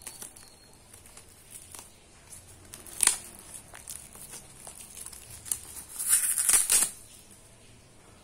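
Clear plastic shrink wrap being peeled and torn off a paperback book, crinkling. There is a sharp tear about three seconds in and a longer, louder rip around six to seven seconds.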